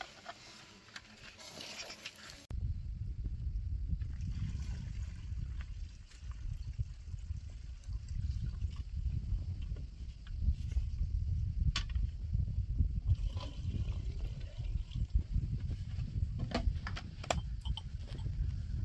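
Wind buffeting the microphone: a fluctuating low rumble that starts abruptly about two and a half seconds in, with a few sharp clicks near the end.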